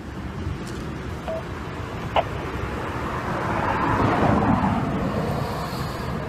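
Outdoor traffic noise of a vehicle going by, swelling to a peak about four seconds in and then fading. A single short click comes about two seconds in.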